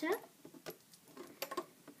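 A few faint clicks and scratches of a plastic crochet hook catching rubber loom bands on the pegs of a plastic band loom.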